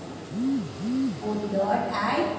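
A woman's voice: two short hummed sounds, each rising and falling in pitch, followed by speech.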